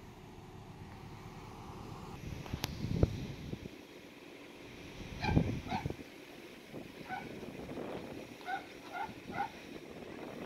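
An animal's short pitched calls: a pair about five seconds in, one more, then three in quick succession near the end, over light wind noise. A single sharp knock about three seconds in.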